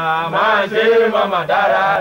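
A man's voice chanting in Yoruba, singing long wavering notes in a repeated refrain.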